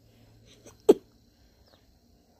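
A person's single short, sharp vocal noise about a second in, over quiet room tone with a faint low hum.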